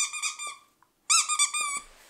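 Squeaker in a plush dog toy squeaking in quick, repeated squeezes: a run of short squeaks at the start, a brief pause, then a louder run just after a second in.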